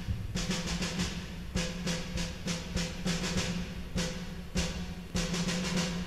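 Drum kit played alone, mainly the snare drum: groups of quick strokes and short rolls in a march rhythm, the drum ringing on a steady low note with each group.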